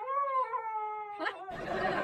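Husky puppy giving one long, wavering howl. About one and a half seconds in, a hand-held hair dryer starts blowing with a steady rush.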